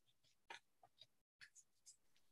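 Near silence with a few faint, short rustles and ticks of paper and fabric pieces being handled at a sewing table.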